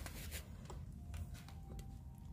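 Quiet background: a low steady hum with a few faint light rustles and clicks. A faint thin tone sets in about a second in.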